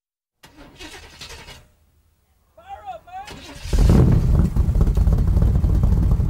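A short vocal sound, then a car engine starts up loud inside the stripped cabin about two-thirds of the way in and keeps running, a heavy low rumble.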